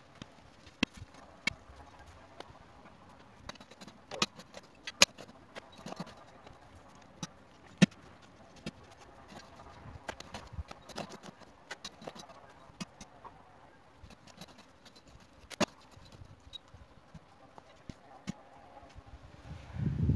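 Manual earth auger being worked in a post hole in stony ground: irregular sharp clicks and knocks, a few much louder than the rest, as the auger goes hard against stones in the soil.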